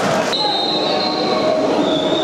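Football stadium ambience of crowd noise, cut off abruptly about a third of a second in. After the cut, long high whistles sound over the crowd, one lasting about a second and another starting near the end.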